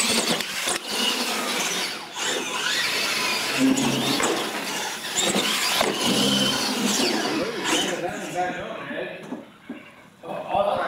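Radio-controlled monster trucks racing on a hard indoor floor, starting suddenly at the launch: motors whining up and down with the throttle and tyres squealing, with several knocks as the trucks hit the ramps and obstacles. The sound dies down near the end as the race finishes.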